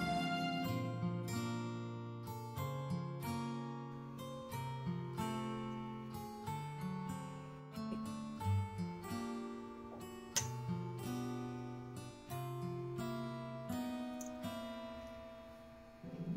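Background music: a plucked acoustic guitar playing a melody of notes that ring and fade, over lower notes that change about once a second.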